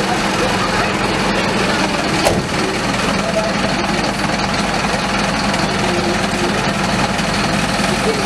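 Fire truck's diesel engine idling steadily with a constant low hum, voices of people around it mixed in. A single short knock a little over two seconds in.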